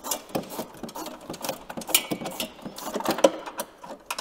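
A hand wrench clicking in quick, irregular runs as a nut is backed off a bolt on a snowmobile's front bumper mount.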